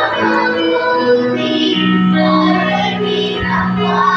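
Children's choir singing a Tagalog worship song, with one long note held through the second half.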